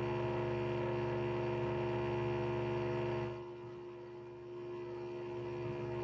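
Steady electrical hum with a buzz of many even tones, dropping to a quieter level about three seconds in.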